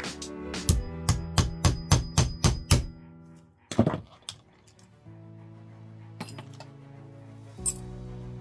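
Hammer blows, about nine at roughly three a second, on a steel scrap blade wedged between the blades of a double-bladed folding knife on a small anvil, cutting through the pins; they stop about three seconds in, followed by a single knock and a few light clicks as the knife is handled. Background music plays throughout.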